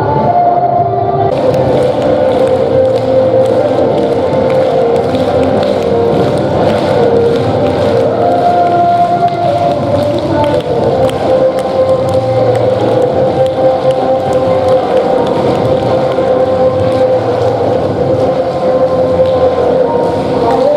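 Recorded dance music played loudly over a hall's sound system, with long held melody notes. About a second in, a dense rattle of many quick hand claps joins it, an audience clapping along.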